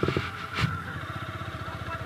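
Yamaha YBR-G's single-cylinder four-stroke engine idling with a steady, even beat, with a light knock about half a second in.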